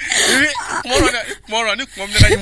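People's voices talking, picked up by handheld microphones.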